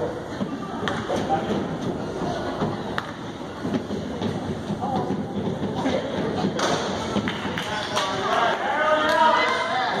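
Thuds of a basketball bouncing on a hardwood gym floor at the free-throw line, with sharp knocks that come closer together in the second half as the ball is shot and rebounded. Spectators' voices carry on underneath and grow louder near the end.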